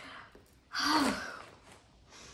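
A woman's short, breathy gasp of delight, about three-quarters of a second in.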